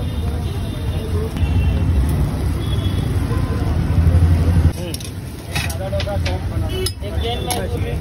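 Street background with a steady low rumble and faint voices. The rumble drops suddenly about halfway through, then a few sharp metal clinks follow.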